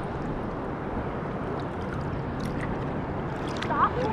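Choppy sea water lapping and sloshing against a camera held at the surface, a steady watery hiss with small splashes and drips.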